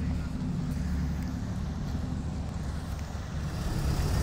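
Steady low engine rumble of a ferry, heard from its open deck.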